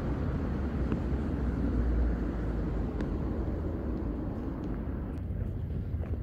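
Outdoor city street ambience: a steady low rumble of distant traffic, easing slightly after about three seconds, with a few faint clicks.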